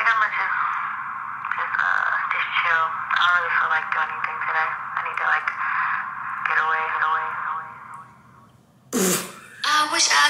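A rap song's vocals playing back through a small speaker, thin with little bass. Near the end the track dips and a short loud burst of laughter breaks in.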